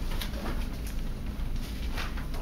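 Sheets of paper being handled and turned close to a podium microphone: faint rustles and small clicks over a steady low hum.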